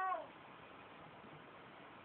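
The tail of a high-pitched, drawn-out cry that falls in pitch and cuts off a quarter second in, followed by faint steady room hiss.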